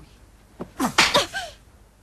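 A person sneezing once: a short voiced intake about half a second in, then one sharp sneeze burst about a second in.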